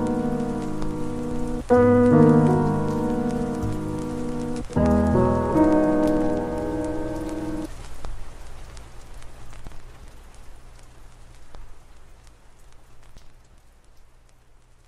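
Lofi track closing: sustained chords struck about every three seconds over a rain-sound bed. The chords stop about halfway through, leaving the rain alone, which fades out toward the end.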